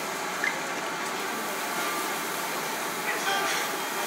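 Steady background noise of a busy dining room, with faint voices of other diners mixed in.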